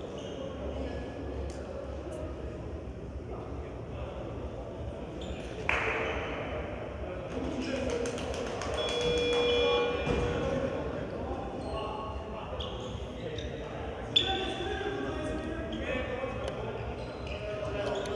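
Indoor gymnasium ambience: scattered voices, basketballs bouncing on the hardwood court and short high squeaks, with one sharp knock about fourteen seconds in.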